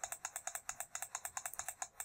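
Rapid, evenly spaced clicks, about ten a second, from a computer key or mouse button pressed over and over to step a graphing-calculator emulator's trace cursor along a graph.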